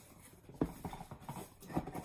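Items being rummaged out of a cardboard shipping box: a few irregular hollow knocks with light rustling, the loudest about half a second in and again near the end.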